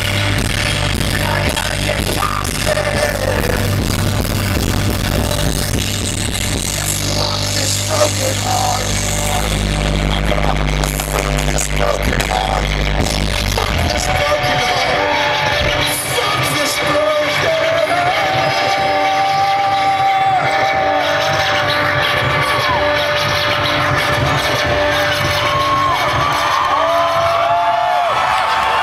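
Live rock band playing the closing section of a song through a stadium PA, recorded from the crowd. About halfway through the bass and drums drop out, leaving a long held note with rising and falling pitched sounds over it.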